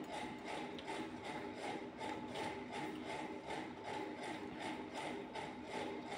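A steady mechanical running sound with a regular ticking pulse, about three beats a second, at a low level in the background.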